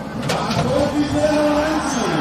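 Hyundai hydraulic excavator working under load as its boom swings and the bucket lifts and empties, with a steady engine-and-hydraulic drone through the middle, over voices of a crowd.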